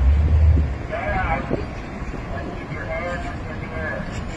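Indistinct voices of people talking nearby, over a steady low outdoor rumble that is loudest in the first second.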